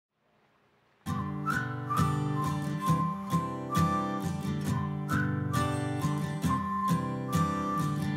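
Song intro: acoustic guitar strumming with a whistled melody over it. It starts about a second in.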